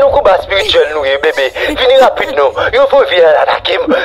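Speech only: a voice talking without pause, with no other sound standing out.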